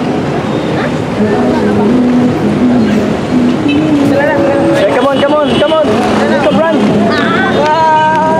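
A voice singing a melody, with held, wavering notes in the second half, over a steady wash of street traffic.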